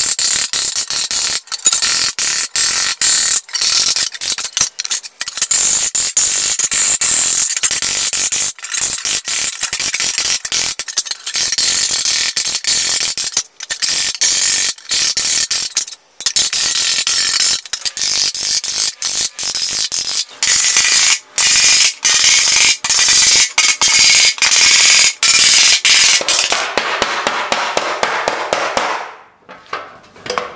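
Angle grinder with a coarse flap wheel grinding a hollow into wet, freshly cut log wood. The loud, rough grinding noise breaks off briefly again and again. It thins out and stops about a second before the end.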